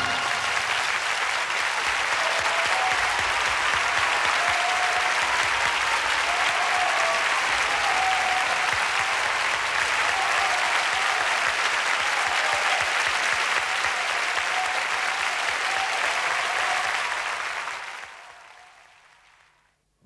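Studio audience applauding steadily, fading out over the last two seconds.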